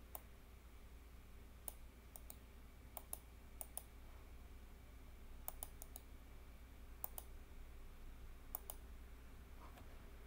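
Computer mouse buttons clicking: about sixteen short, sharp clicks, mostly in quick pairs, over a faint low hum.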